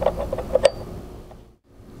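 A few light metallic clicks as a steel blade flange is fitted onto a concrete saw's spindle, then the sound fades out to near silence about a second and a half in.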